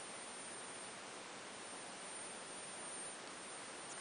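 Steady hiss with a faint, high-pitched steady whine: a joule ringer lamp ringing as its single-transistor oscillator drives the ferrite-yoke transformer to light a CFL bulb.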